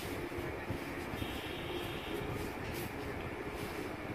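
Steady low rumble of background noise with a faint hum, with no distinct knocks or clicks.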